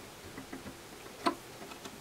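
A locking tab on an HP 11076A instrument case being pushed with the fingertips, giving one sharp little click just past a second in and a fainter tick earlier.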